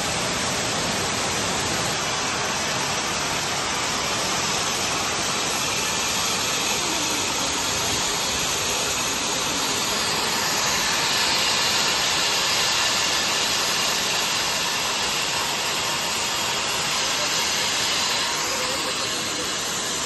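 Steady industrial noise of a working steel plant mill hall: machinery and blowers running together as one even, hissing din with no distinct strokes. It grows slightly louder and brighter in the middle.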